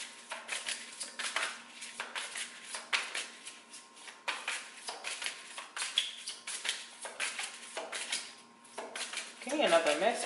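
A deck of oracle cards being shuffled by hand: a quick, irregular run of papery slaps and clicks of card on card, pausing briefly about eight seconds in.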